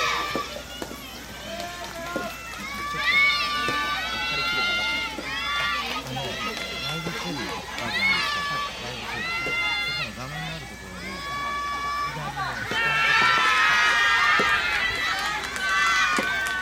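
High-pitched girls' voices shouting drawn-out calls that rise and fall in pitch, several voices overlapping and loudest near the end.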